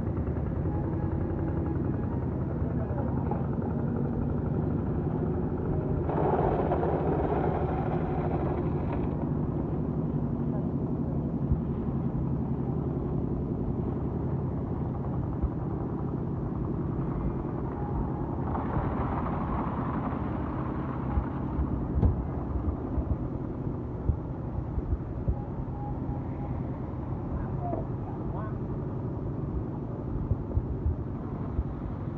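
Steady low rumble of a running motor, mixed with wind buffeting the microphone. A few sharp knocks come in the second half.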